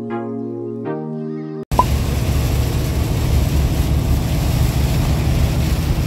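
Intro music for about the first second and a half, then a sudden cut to the steady noise inside a Freightliner Cascadia semi-truck's cab while it drives in heavy rain: a deep engine and road rumble under a hiss of rain and spray.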